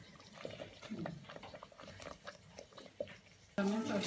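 A spatula stirring thick curry sauce in a stainless-steel pot, heard as faint scrapes and light taps against the pot. A voice comes in near the end.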